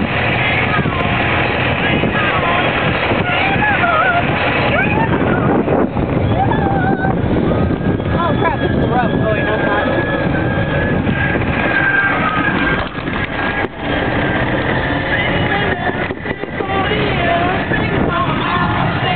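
Golf cart driving over grass: steady rumble of the cart's running and wind buffeting the microphone, with a thin steady whine for a few seconds in the middle. Indistinct voices talk over the noise.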